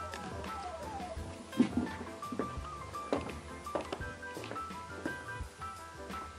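Background music with a steady beat and a pitched melody.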